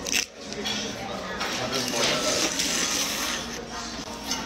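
Crab leg shell snapped apart by hand: one sharp crack just after the start. Restaurant chatter carries on behind it.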